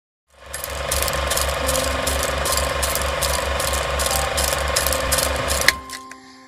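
A fast, steady mechanical rattling, about four beats a second, that starts just after the beginning and stops abruptly with a click near the end.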